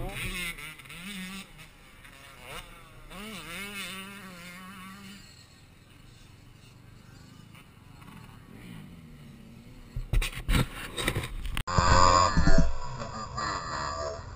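Motocross bikes' engines revving on the track at a distance, then a run of loud knocks and rustling on the helmet camera's microphone near the end.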